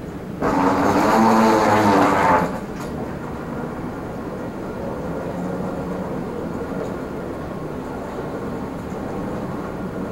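Steady mechanical drone of an airport moving walkway running. A louder pitched sound starts about half a second in and cuts off after about two seconds.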